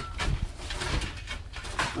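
Shovel turning over soil in a large woven bulk bag, a few short scrapes through the earth.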